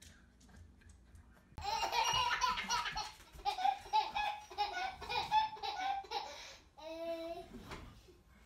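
A baby laughing: a run of short, high-pitched giggles that starts suddenly about one and a half seconds in, then one longer call near the end.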